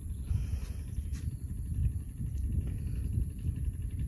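Wind buffeting the microphone outdoors: an uneven low rumble with no distinct events.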